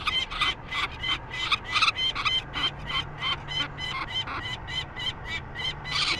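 Peregrine falcon chick giving a rapid, even run of harsh repeated calls, about four a second, in distress at being handled.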